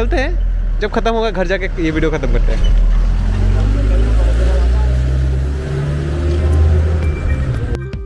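A voice in the first second, then loud, muffled low rumble and handling noise on a phone microphone being moved about and covered. It is a faulty stretch of the recording, where the audio has gone wrong.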